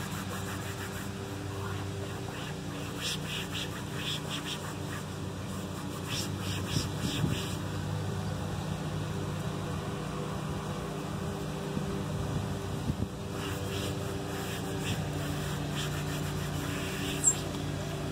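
A cloth wiping and scrubbing plastic car trim, heard as a few short rubbing sounds about 3 s in, around 6 to 7 s and near the end, over a steady low mechanical hum.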